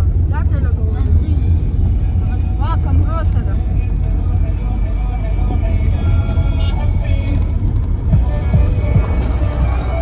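Steady low road and engine rumble inside a moving car's cabin, with music and a singing voice over it.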